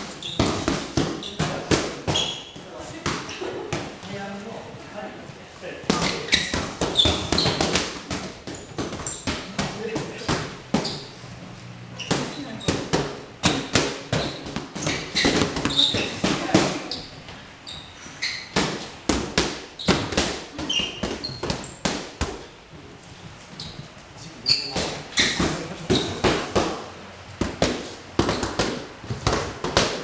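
Boxing gloves smacking against focus mitts: many sharp punches in quick, irregular flurries, several pairs hitting at once, with voices over them.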